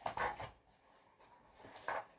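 Paper-and-cover rustling and rubbing as a picture book is handled and its pages are turned against a wooden tabletop, with a scratchy burst at the start and a short one near the end.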